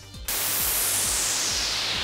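DIY modular synth's sweep module, an MS-style filter with an envelope generator, played on white noise from the noise generator as a synthesized crash cymbal. A hiss starts about a quarter second in and slowly darkens as the filter sweeps down.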